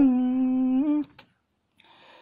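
A single unaccompanied voice holding a long, steady note in Tai khắp folk singing, lifting slightly in pitch before breaking off about a second in. A small click follows, then near silence with a faint breath near the end.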